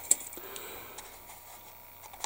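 Faint handling of a plastic model-kit sprue: a few soft clicks in the first half second and another about a second in, then quiet room tone.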